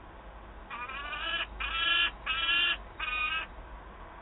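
Peregrine falcon calling four times, each call about half a second long, the middle two the loudest.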